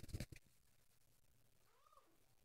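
Mostly near silence: a few soft knocks in the first half-second, then a faint animal call near the end whose pitch rises and falls.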